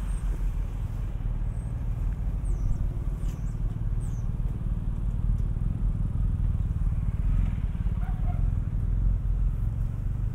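A vehicle engine runs with a steady low rumble throughout. A few faint high chirps come about three seconds in.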